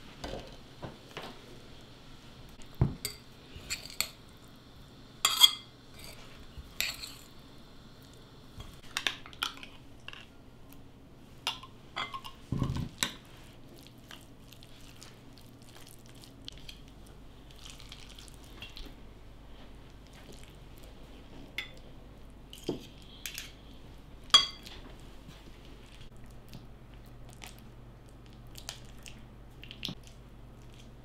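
Metal spoons clinking and scraping against glass as a salad is stirred in a glass bowl and scooped into a stemmed glass cup: irregular sharp clinks, a few of them loud, with soft scrapes in between.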